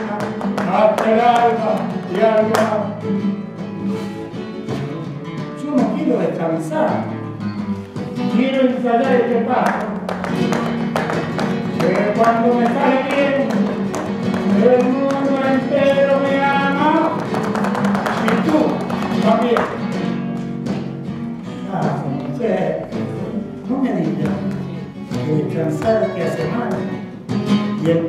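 Live flamenco music: a voice singing with acoustic guitar accompaniment and frequent sharp strummed accents.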